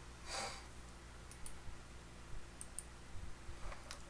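Quiet room tone with a short breath near the start, then a few faint small clicks.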